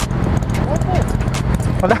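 Motorcycle engines idling at a standstill: a steady low rumble with an uneven, pulsing beat.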